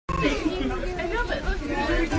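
Chatter of people talking.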